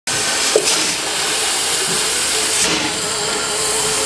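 Steady hiss of steam escaping from a standing 0-4-0 tank steam locomotive, swelling briefly twice.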